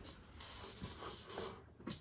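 Quiet room with faint rustling and a few soft clicks: handling noise as the player shifts the harp and herself closer.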